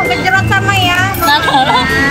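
Women's voices chatting over background music with a steady low bass line.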